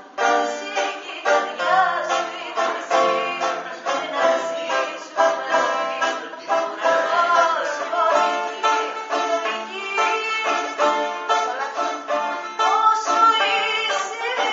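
A woman singing with a bouzouki accompanying her, its plucked notes in a quick, even run under the voice.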